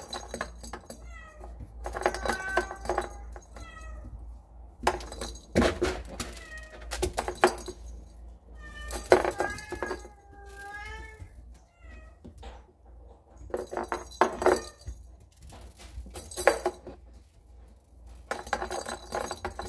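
A kitten meowing over and over in short, high calls that come in several bouts, mixed with sharp clicks and scratchy clattering as a plastic toy ball and litter pellets are pawed around.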